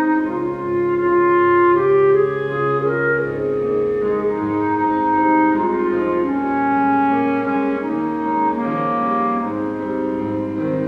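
Slow instrumental keyboard music: a sustained melody over held chords and a bass line, in a mellow wind-like voice rather than a decaying piano tone.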